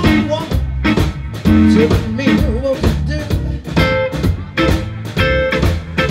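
Live blues band playing: electric guitar phrases over organ and a steady drum beat.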